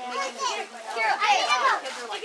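Several children's voices shouting and chattering excitedly over one another.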